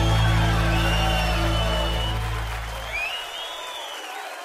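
A live band's final held chord fading and cutting off about three seconds in, under audience applause and cheering.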